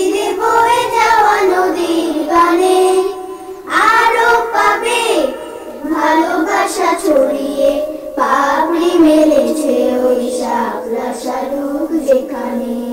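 A group of children singing a Bengali song together, in sung phrases with short breaks between them.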